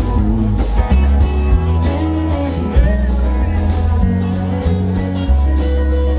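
Live rock band playing through a stage PA: amplified electric guitars and a heavy bass line, with a man singing.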